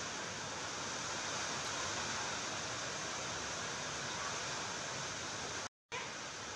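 Steady, even hiss of background noise with no distinct events, broken by a brief total dropout near the end.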